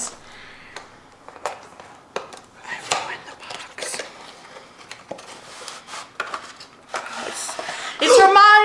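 Cardboard packaging of a boxed toy wand being handled and opened: scattered soft clicks and taps as the box and its paper sleeve are slid apart.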